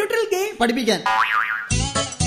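Cartoon spring 'boing' comedy sound effect, its pitch wobbling rapidly up and down for about half a second after a short spoken line. A low bass hit cuts in near the end.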